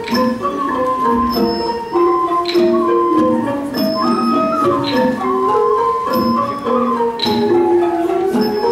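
Thai classical ensemble playing: ranat ek and ranat thum xylophones run a busy melody in short, stepping notes. Small ching cymbals strike at an even pace about once a second, some strokes ringing on.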